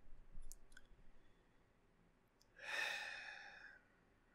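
A man sighing: one long breathy exhale about two and a half seconds in that trails off, after a few faint clicks.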